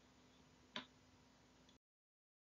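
Near silence: faint room tone with one short click just under a second in, after which the sound cuts out completely near the end.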